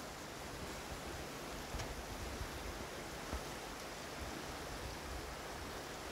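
Steady rushing of a creek flowing beneath the bridge, an even hiss without breaks.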